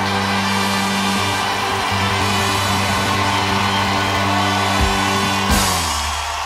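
A live band holding its final chord with a wash of cymbals, drum hits punctuating it, then a last accented stroke about five and a half seconds in that cuts the chord off, leaving a low ringing tail.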